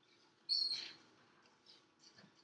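A single short, high-pitched squeak about half a second in, fading out within half a second, with a fainter squeak near the end.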